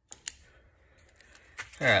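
Two quick, sharp clicks just after the start, then faint, quiet handling noise, before a man says "all right" near the end.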